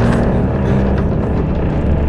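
Dark orchestral film score with low notes held under a dense, rumbling layer of sound.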